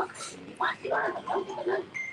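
A person's voice talking in short broken phrases.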